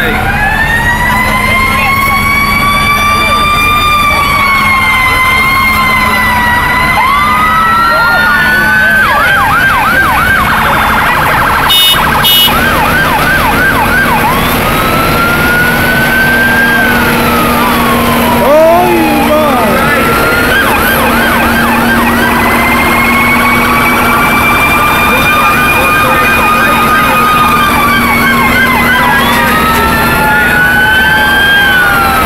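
Emergency vehicle siren sounding in a parade, a slow wail rising and falling that switches to a fast yelp in stretches, over a steady low engine drone.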